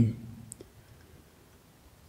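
A pause in slow spoken guidance: the man's voice trails off, a single faint click comes about half a second in, then near-quiet room tone.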